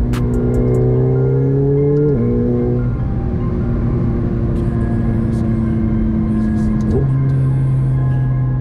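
McLaren 720S twin-turbo V8 heard from inside the cabin, accelerating on the highway. Its note climbs, drops sharply with an upshift about two seconds in, holds and climbs slowly, then changes again near the end as the car slows. Background music plays under it.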